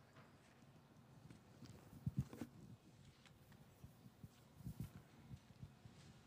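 Near silence in a quiet hall, broken by a few faint soft knocks and handling bumps from small objects being moved at a lectern: a cluster about two seconds in and another near five seconds.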